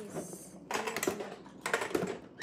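Mahjong tiles clacking against each other and on the table, a few sharp clicks about halfway through and another cluster near the end.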